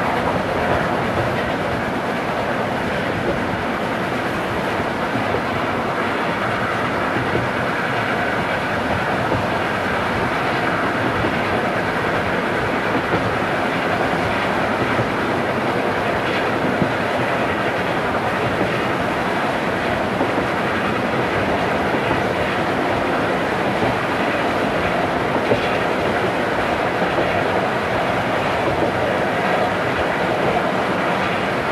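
A 1971 field recording of a train hauled by a JNR Class C62 steam locomotive, played from a vinyl record: the train running steadily, with the clickety-clack of wheels over rail joints.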